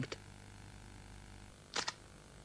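Quiet pause in an old recording: a faint steady hum, with one short breathy noise near the end, a breath drawn before the next spoken line.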